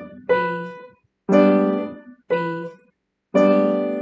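Piano notes and chords struck one at a time, about once a second, each left to ring and fade before the next; fuller chords alternate with thinner strikes.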